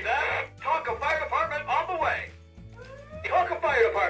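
Tonka toy fire engine's electronic sound module playing recorded voice phrases about the fire department through its small speaker, over a music track with a stepping bass line.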